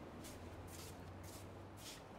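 Faint shuffling footsteps, about two soft scuffs a second, over a low steady hum.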